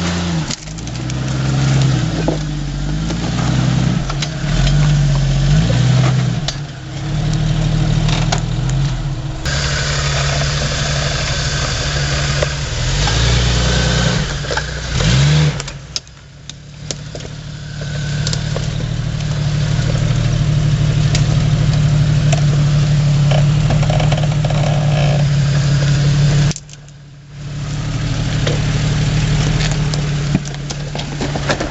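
Jeep Cherokee XJ's 4.0 L straight-six engine revving up and down repeatedly as it pulls over rock, then running steadier under load. The sound drops away briefly twice.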